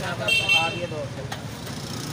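Street traffic: a motor vehicle engine running steadily, with brief voices in the first second and a short high-pitched tone about a third of a second in.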